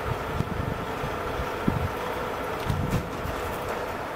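Wind buffeting the microphone over a steady background hum, with a couple of faint clicks.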